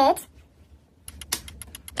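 A quick run of light clicks in the second half, several in close succession.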